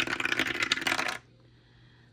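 A six-sided die clattering down through a dice tower: a rapid rattle of small hard knocks lasting just over a second, which then stops as the die comes to rest.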